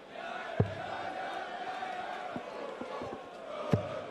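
Two darts thudding into a dartboard about three seconds apart, with a couple of fainter knocks between, over a large crowd chanting.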